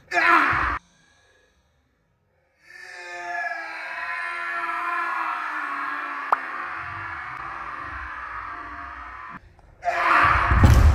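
A short shout, then about two seconds of silence, then a long, wavering, moan-like voice drawn out for about seven seconds with a single sharp click partway through.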